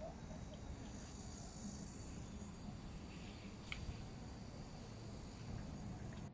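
Faint steady chirring of insects over a low, even background rumble, with one short click a little past halfway through.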